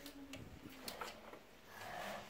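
Quiet indoor room tone with a few faint clicks and a light rustle.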